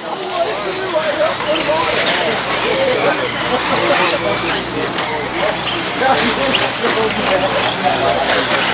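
Indistinct voices talking over each other, with the noise of 1/8-scale electric off-road RC buggies running on a dirt track.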